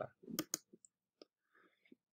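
A few quiet computer-mouse clicks: two sharp ones close together about half a second in, then fainter ticks later.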